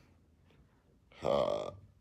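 A single short, loud vocal sound from a man, starting a little over a second in and lasting about half a second.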